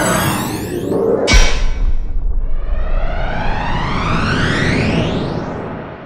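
Logo sting of electronic music and sound effects: a falling sweep, a sharp deep hit about a second and a half in, then a long rising sweep that fades out near the end.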